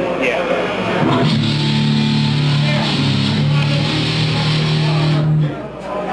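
Amplified electric guitar holding one low note for about four seconds, then cut off suddenly, over crowd chatter.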